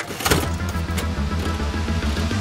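Animated logo sting: music with a whirring, rapidly pulsing slot-machine reel-spin sound effect. There is a sharp hit just after the start and another about a second in.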